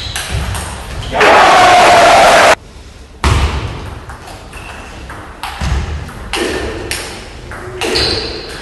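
Celluloid-type table tennis ball clicking off bats and table in quick rallies. About a second in comes a loud burst of shouting and crowd noise that cuts off abruptly.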